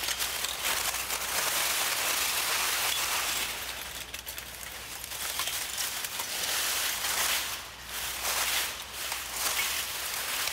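Many wire-linked metal bottle caps rustling and clinking against each other as a bottle-cap sculpture is moved: a dense, continuous patter of small metallic clicks that swells and eases.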